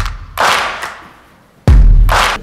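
Title-sequence sound effects: a swish about half a second in that dies away, then a sudden heavy, deep hit near the end.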